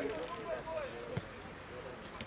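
A football kicked once, a sharp thud about a second in, over voices calling out in the background.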